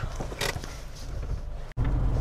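Car engine running at rest, a steady low rumble heard from inside the cabin, with a brief sharp noise about half a second in. The sound cuts off abruptly near the end.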